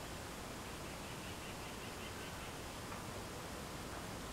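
Faint, steady hiss of background noise, with no distinct event.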